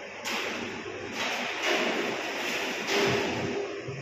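Balls running along the wire tracks of a large rolling-ball kinetic sculpture (an 'energy ball' exhibit). The sound comes as a series of hissing rushes, each starting abruptly, about four in the span.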